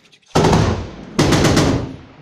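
Two loud bursts of automatic gunfire fired close by, the first starting about a third of a second in and the second following a moment later, each made of rapid shots.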